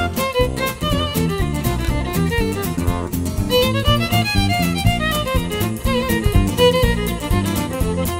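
Western swing band recording in an instrumental break, a fiddle carrying the lead line over the band's rhythm section.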